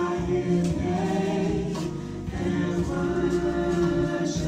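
A choir singing gospel music, several voices together on held notes.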